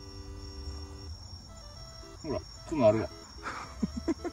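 Crickets trilling steadily at a high pitch, under background music with held notes in the first second. Short bursts of a person's voice come about two and three seconds in, the one near three seconds the loudest sound.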